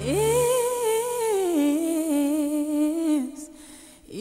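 A woman's solo voice singing one long, wavering held note without words; the backing music drops away about half a second in. The note steps down to a lower pitch about halfway through and fades out a little after three seconds.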